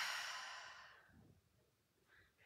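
A woman's long breath out through the mouth, loudest at the start and fading away over about a second.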